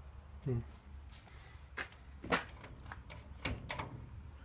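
A few sharp metallic clicks and knocks, several in quick succession near the end, as the latch handle of a locked metal door is tried and the door will not open.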